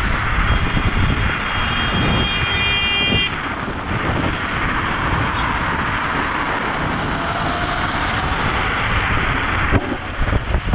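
Wind buffeting the microphone and road rumble while riding a Dualtron Thunder 2 electric scooter at speed. A high, steady tone sounds over it for about three seconds near the start.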